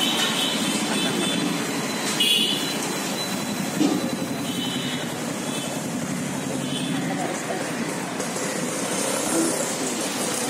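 Street traffic: motorbikes and scooters running past in a steady noise, with a short high horn toot about two seconds in, under indistinct background voices.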